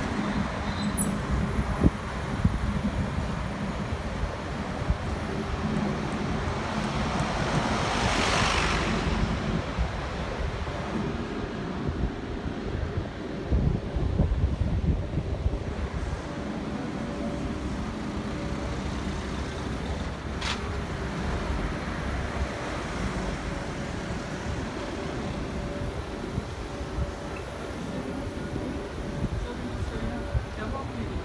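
City street traffic, a steady noise of cars and buses, with one vehicle passing close about eight seconds in and a single sharp click about twenty seconds in.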